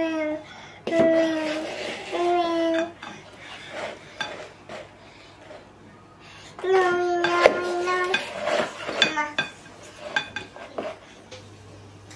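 A metal whisk and spatula stirring batter in a glass mixing bowl, with sharp clinks and scrapes against the glass, several coming close together in the second half. A young child's voice sounds a few short held notes in between.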